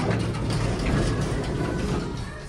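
Elevator doors sliding open: the door operator and the stainless steel door panels rattle along their tracks, starting with a sudden click.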